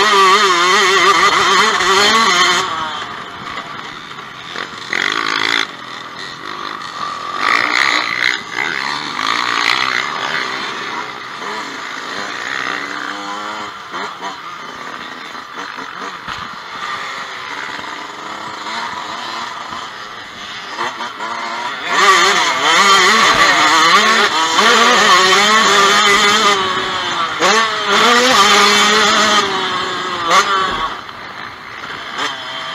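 Yamaha YZ125 two-stroke dirt bike engine heard on board, its revs rising and falling as it is ridden around a motocross track. Loud full-throttle stretches at the start and over the last eight seconds, with quieter rolling-off and lower revs in between.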